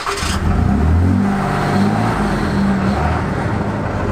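Ram 5500 chassis-cab's 6.7-liter Cummins turbo-diesel straight-six running just after being started, heard at the exhaust tailpipe; its pitch lifts a little about a second in, then holds steady.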